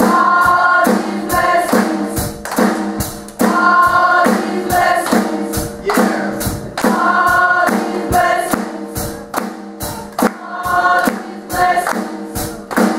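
Youth gospel choir singing together, with a steady percussive beat under the voices.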